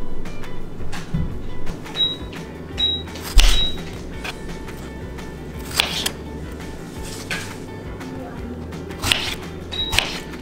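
A kitchen knife slicing strawberries on a bamboo cutting board, the blade knocking on the wood in a handful of sharp knocks, the loudest about a third of the way in. Background music plays throughout.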